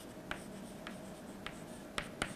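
Chalk writing on a chalkboard: four short, sharp taps and scratches about half a second apart as letters are formed, over a faint steady room hum.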